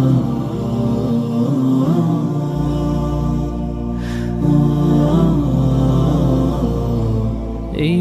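Background music: an Arabic devotional song, here a wordless vocal chant with held, sliding notes over a low steady drone.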